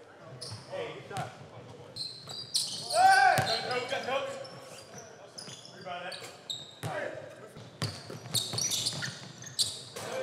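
Pickup basketball on a hardwood gym court: the ball bouncing and sneakers squeaking in short high chirps, with players' voices shouting, loudest about three seconds in.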